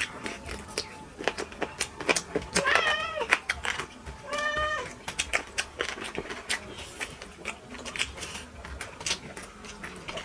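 Close-up eating noises of two people eating chicken pulao with their hands: lip-smacking, chewing and small wet clicks throughout. Two short high-pitched calls stand out, one about two and a half seconds in and a steadier one about four and a half seconds in.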